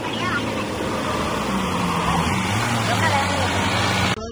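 A 4x4 jeep's engine running under load as it drives through a muddy water crossing, with steady splashing from the water. The engine note rises a little partway through.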